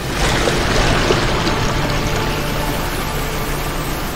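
A loud rush of churning, surging water as a huge sunken hull breaks the surface. It sets in suddenly and slowly eases, with faint music held underneath.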